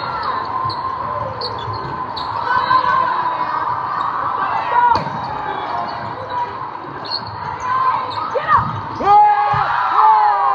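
Indoor volleyball rally: sharp hits of the ball over a constant hubbub of many voices in a large, echoing hall. Shouting rises in the last second as the point is won.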